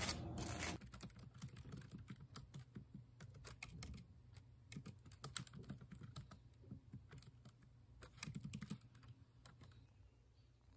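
Fingers typing on a computer keyboard: a quick, irregular run of key clicks. In the first second a knife scrapes chocolate spread across toast.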